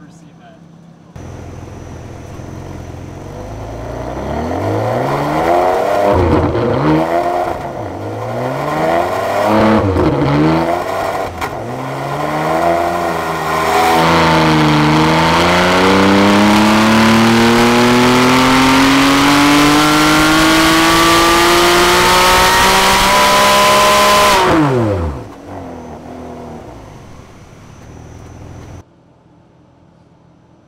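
Ferrari 599 GTB's naturally aspirated 6.0-litre V12, on factory exhaust, running on a chassis dyno. It revs up and drops back several times as it is taken up through the gears, then makes a long full-throttle pull rising steadily in pitch for about ten seconds. The throttle then closes and the revs fall back to a low idle before the sound cuts off.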